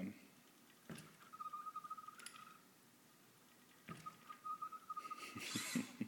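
A small robot's electric drive motors whining in two short spells of about a second each, each starting with a click, as the robot makes short moves trying to get clear of a wall. Near the end comes a brief louder scraping rush.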